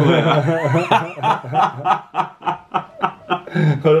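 A man laughing: after a moment of laughing voice, a run of short chuckles, about five a second.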